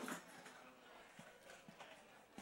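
Near silence: quiet room tone with a few faint, scattered knocks.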